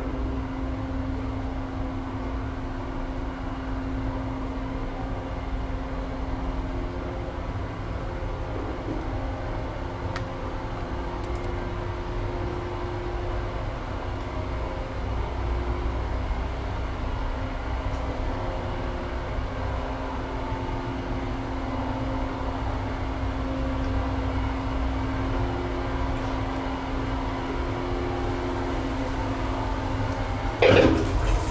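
Inside a moving 1950 Otis single-speed traction elevator car: a steady low rumble and hum of the car travelling, with the cab's ventilation fan running throughout.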